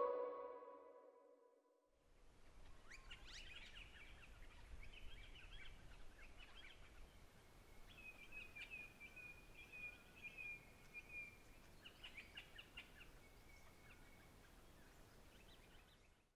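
Music fading out, then faint birds chirping and calling over quiet outdoor background noise.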